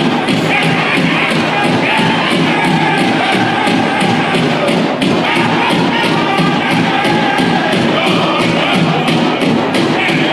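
Powwow drum group singing a fast fancy shawl song: high-pitched voices over a steady, even beat on a large drum, about three beats a second.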